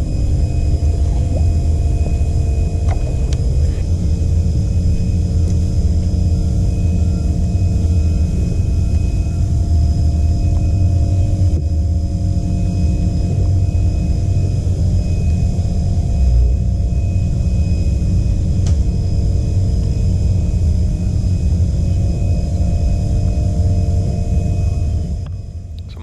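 Steady loud low rumble with a constant hum of several steady tones over it, cutting off abruptly near the end.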